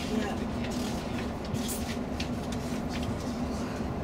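Inside a coach cruising on a motorway: steady engine and road drone with a constant low hum, and a few short rattling clicks about halfway through.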